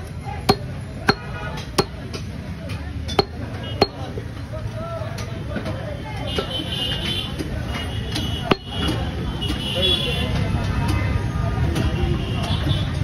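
Butcher's cleaver chopping mutton on a wooden chopping block: about five sharp chops in the first four seconds, then fewer and softer strikes, over a steady low street rumble.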